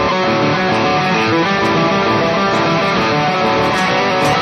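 Les Paul-style electric guitar playing a rock riff of double stops on the A and D strings, with the strings left open and ringing rather than palm-muted. The notes run on continuously without a break.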